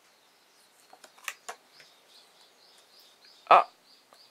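Laminated homemade playing cards clicking and sliding as one card is drawn from the deck and added to a hand, a few light clicks about a second in. A bird chirps repeatedly and faintly in the background.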